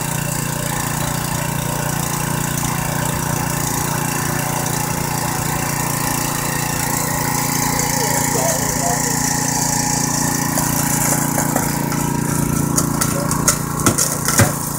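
Engine-driven hydraulic power unit of a jaws-of-life rescue cutter running steadily under load while the cutter blade closes through a tire. A few sharp cracks come near the end.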